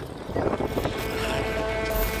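Wind rumbling on the microphone, then from about half a second in a steady electronic drone of several held tones comes up, the start of a video transition sound effect.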